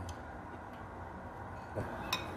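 A ladle clinks and knocks against a hot pot as a bone is fished out of the broth: one sharp knock at the start, then a few faint ticks over a steady low hum.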